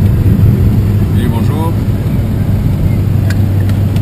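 Renault 4's small four-cylinder engine and road noise heard inside the cabin while driving, a loud, steady drone. A voice speaks briefly about a second in.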